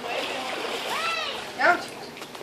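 Pool water splashing as a small child paddles in it, with two short high-voiced calls, one about a second in and one near the end.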